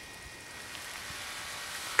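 Faint, steady hiss of outdoor background noise with no distinct events, growing slightly louder about half a second in.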